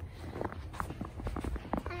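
Light crunching of snow, an irregular scatter of short soft crunches and clicks, over a low steady rumble.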